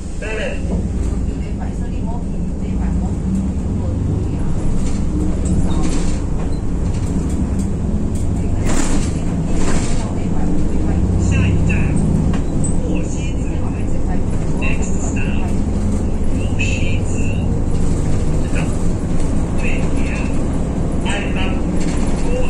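City bus engine drone heard from inside the cabin near the front. It grows louder over the first few seconds as the bus pulls away and picks up speed, then runs steadily at cruising speed.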